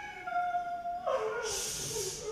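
A performer's voice making a high, drawn-out dog-like whine that dips slightly in pitch. It turns louder and breathier about a second in, ending in a hissing breath.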